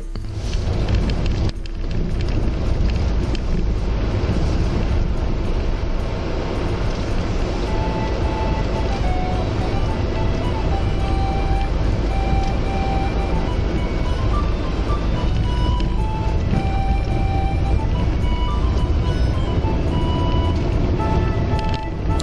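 A car driving slowly, with a steady low rumble of road and engine from inside the cabin. Faint music with a simple melody comes in over it about a third of the way through.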